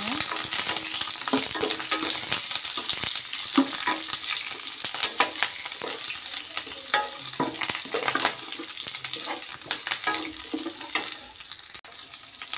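Chopped shallots, garlic, curry leaves and bay leaves sizzling in hot oil in a stainless steel kadai, stirred with a steel spoon that scrapes and clicks against the pan. A steady hiss with frequent short clinks of the spoon.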